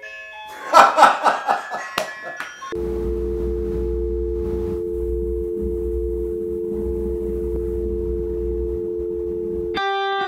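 A "technical difficulties" interruption sound effect. It opens with a couple of seconds of stuttering glitch noise, then settles into a steady two-note electronic tone like a telephone dial tone over a low hum, held for about seven seconds. A short chime comes right at the end.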